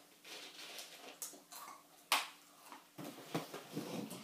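Light knocks and handling noises of children moving at a small plastic table and chairs, with one sharp knock about two seconds in and a few more near the end as the boy gets up from his chair.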